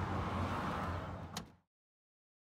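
Tesla Model S liftgate being closed, latching with one sharp click about a second and a half in, over a steady low hum; the sound then cuts out abruptly.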